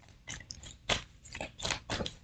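Tarot cards being shuffled and handled by hand: a quick, irregular run of short crisp swishes and snaps, about six in two seconds.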